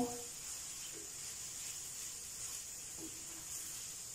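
Quiet, steady sizzle of a tomato-and-onion masala sauce frying gently in a stainless steel pan, the curry base cooking down until its oil begins to separate.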